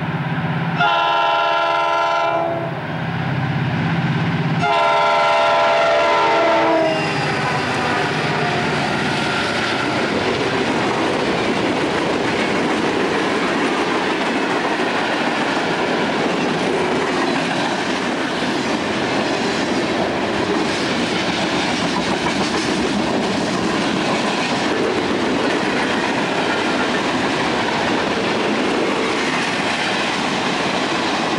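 CSX SD40-2 diesel locomotive sounding its air horn in two blasts, a short one about a second in and a longer one a few seconds later. Then its freight train of covered hoppers and boxcars rolls past close by, a steady rumble of steel wheels on rail.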